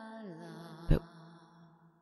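Soft ambient background music: a sustained droning chord whose low note slides down shortly after it begins, fading away near the end. A single short spoken word cuts in about a second in.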